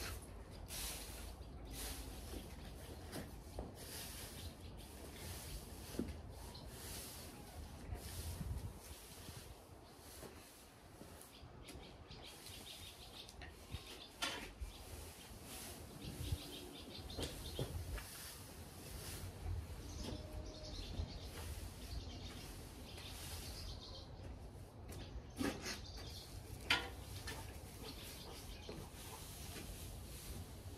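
Loose hay rustling in repeated soft swishes as it is forked and tossed across a shed floor, with a few short, sharp bird chirps between.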